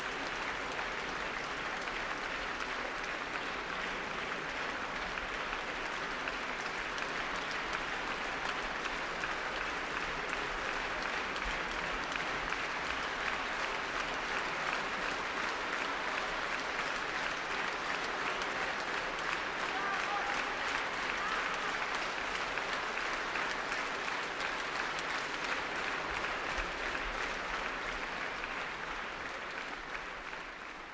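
Large concert-hall audience applauding: dense, steady clapping that begins to fade near the end.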